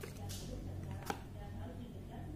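Paper and cardboard being handled: a brief rustle of a folded paper user manual, then a single sharp click about a second in as the cardboard box is picked up.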